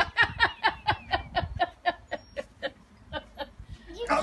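A person laughing in a long run of quick 'ha' pulses, about four a second, loud at first and fading toward the end.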